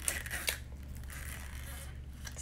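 Plastic lid being pried off a foam soup cup: two sharp clicks and creaks within the first half second, then only a low steady room hum.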